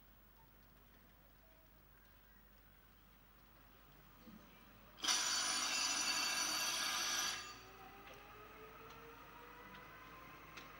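An electric bell rings for about two seconds, starting and stopping abruptly about halfway through. It is followed by a faint rising whine as the greyhound track's mechanical hare gets under way.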